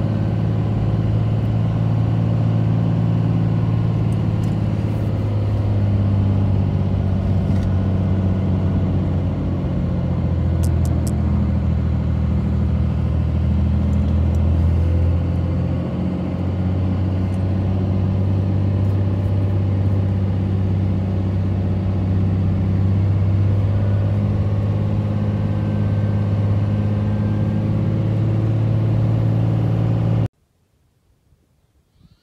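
Steady low drone of a vehicle's engine and road noise heard from inside the cab while driving, with a few faint clicks and rattles.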